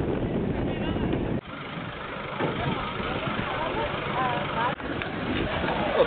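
A steady noisy rumble with people's voices talking in the background. The sound dips sharply twice, about one and a half seconds in and again near the end.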